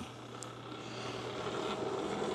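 Keurig K-Café milk frother starting on its cappuccino setting: a faint, steady whir of the frother whisk spinning in the milk, growing gradually louder.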